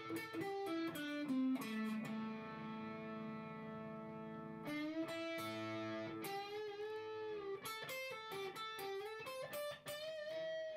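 Epiphone 1956 Les Paul Pro electric guitar played on its bridge P-90 pickup through a drive pedal: quick single-note lines, with a note left ringing for a couple of seconds about two seconds in, then bent, wavering notes before the quick runs return.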